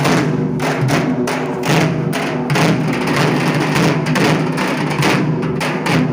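Several dhak drums, large Bengali barrel drums, played together with thin sticks in a fast, dense, unbroken rhythm.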